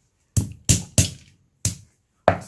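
A pestle pounding whole green bird's-eye chillies on a thick wooden chopping board: four sharp knocks, the first three in quick succession and the fourth after a short pause.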